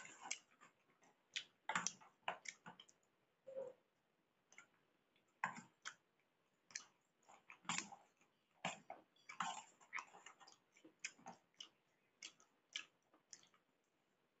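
Eating sounds: a metal spoon clicking and scraping against a stainless-steel plate while scooping pasta, with chewing. Short sharp clicks come irregularly, several a second in bunches, with brief lulls.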